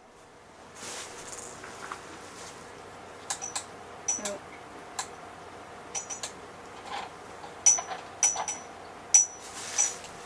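Scattered sharp clicks and light knocks off-camera as room lights are switched on and someone moves about, over a faint steady background hum.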